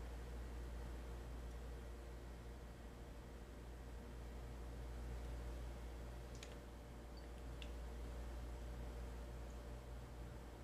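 Two small, faint clicks about a second apart, about two-thirds of the way in, from handling the tiny M.2 SSD retaining screw and a small screwdriver over an open laptop, with a faint steady low hum underneath.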